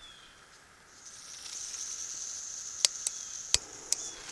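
A backpacking canister stove on a four-season isobutane/propane/butane canister at about −12 °C. Its valve opens about a second in and gas hisses steadily through the burner, then the igniter clicks about four times as the stove lights. The fuel mix still gives enough vapour in this cold for the stove to start readily.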